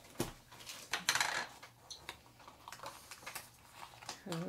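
A small plastic toy can being twisted and pried open by hand: a sharp click just after the start, a louder snap and crinkle about a second in as the lid comes off, then light clicks and rustling as the wrapped packet inside is handled.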